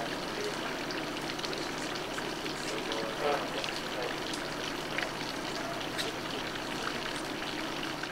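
Steady outdoor background hiss with faint, indistinct murmurs of people nearby, a brief one about three seconds in, and a few small clicks.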